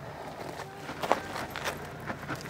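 Footsteps and scuffs on rocky, gravelly ground: a few irregular short crunches and knocks.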